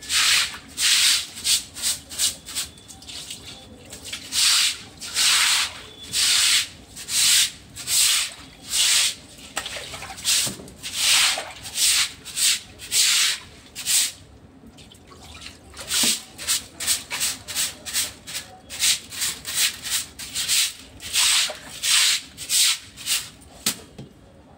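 Repeated strokes of a brush scrubbing on a wet surface, in runs of quick strokes broken by short pauses.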